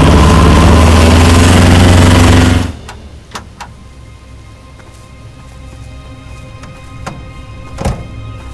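Old military truck's engine running loud as it drives close past, with a deep steady rumble, cutting off suddenly about two and a half seconds in. Then a quiet bed of held music tones with a few light clicks and knocks.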